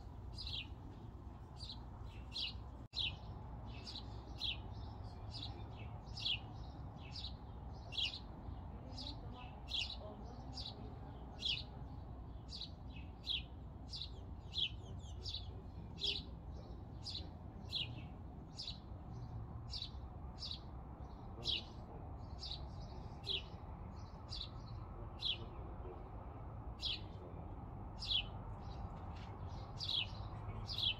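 A single bird chirping over and over, a short high chirp a bit more than once a second at a very even pace, over a steady low rumble.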